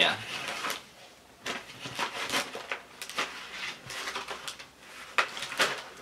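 Packs of stationery being gathered up and handled: plastic blister packs of pens and spiral notepads give irregular crinkles, clicks and knocks.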